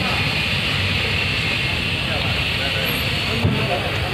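Steady outdoor background noise: a low rumble with hiss and faint voices in the background.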